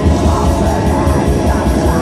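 Black metal band playing live: distorted electric guitars over fast, dense drumming, loud and unbroken.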